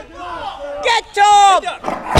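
Raised voices shouting in short, high-pitched calls; the loudest is a drawn-out yell in the second half.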